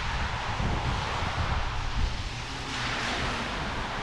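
Wind buffeting an action-camera microphone, an uneven low rumble over a steady outdoor hiss that grows a little brighter near the end.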